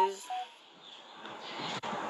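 A pitched tone ends in the first moment, then a brief near silence as faint background hiss builds back up. A single sharp click comes just before the end.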